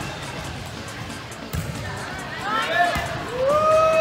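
A volleyball struck with a sharp thump about one and a half seconds in, and again near three seconds, in a gym. Then players call out, ending in one long drawn-out shout.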